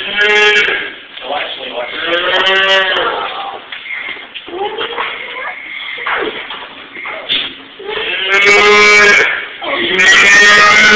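A young child's high voice calling a drawn-out "moo" three times, imitating a cow. The last call, near the end, is the longest.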